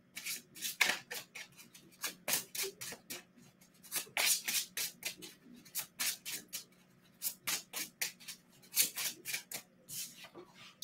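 A tarot deck being shuffled by hand, overhand style: a rapid, irregular run of short papery card slaps and flicks.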